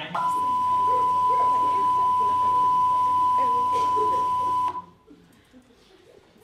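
A steady single-pitch television test-card beep, the tone that goes with colour bars, cutting off suddenly about four and a half seconds in. Faint voices can be heard beneath it.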